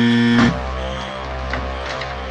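A loud 'wrong answer' buzzer sound effect, one flat steady buzzing tone that cuts off suddenly about half a second in. A quieter low steady drone with faint scattered clicks follows.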